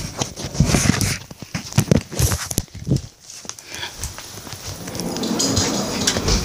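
Irregular knocks and thumps from a phone being handled and carried about, with footsteps, turning to a softer rustle near the end.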